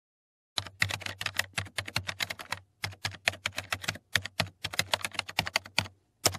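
Typing sound effect: a rapid run of computer-keyboard key clicks, about seven a second, with two brief pauses. It starts about half a second in and stops just before the end.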